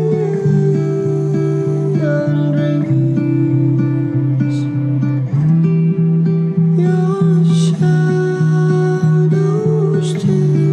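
Indie folk song in an instrumental passage: acoustic guitar strummed steadily, with no singing.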